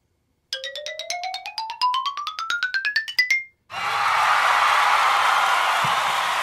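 Sound effects of an online random name-picker wheel played through computer speakers: rapid, evenly spaced ticks over a tone that rises steadily in pitch for about three seconds as the wheel spins, cutting off when it stops on the winner. After a short pause, about three seconds of recorded applause follow.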